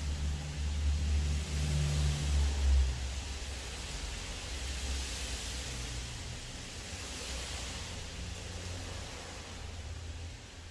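Steady hiss of heavy rain, under the low rumble of a vehicle engine outside. The rumble is loudest in the first three seconds, then fades.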